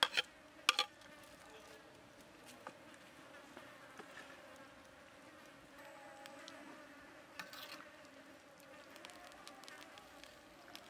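A metal ladle clinks against a steel wok and plate: three sharp clicks in the first second, then a few softer stirring clicks about seven seconds in. Under them is a faint, steady buzz.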